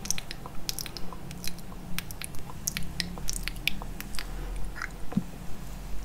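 Close-miked mouth sounds of nibbling on the stick of a mascara spoolie: sharp little clicks and smacks of lips and teeth, several each second.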